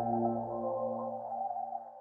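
Background music: a sustained, held chord of steady tones slowly fading out.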